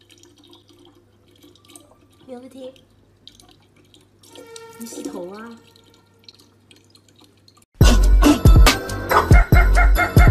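A thin stream of water trickling from a tap into a plastic bottle, over a low steady hum, with a person's voice twice, briefly and softly. About eight seconds in, loud hip-hop music with a heavy beat cuts in.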